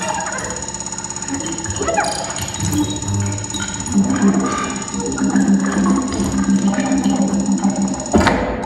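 Experimental live music for baritone saxophone, percussion and electronics: a dense, buzzing texture of rapid pulses and short sounds over a thin steady high tone, with a sustained low tone entering about four seconds in.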